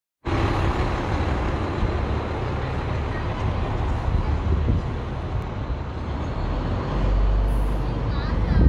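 Steady outdoor street noise with a low rumble, typical of a vehicle engine running nearby; the rumble grows heavier near the end.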